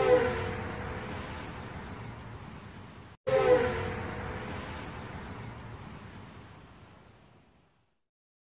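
Outro sound effect played twice: a sudden hit with a slightly falling tone and a long tail that fades away. It is cut off abruptly and starts again about three seconds in.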